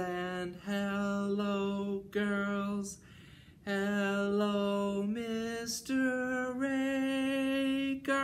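A man singing a slow, unaccompanied hello song: long held notes that step up the eight-note scale, with a short pause about three seconds in.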